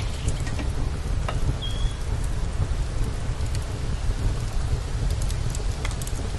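Open wood fire crackling under cooking pots: scattered sharp pops over a steady hiss and low rumble.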